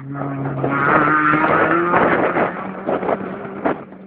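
Rally car driving past at speed, its engine loudest about a second in, the note rising as it accelerates, then fading as it moves away.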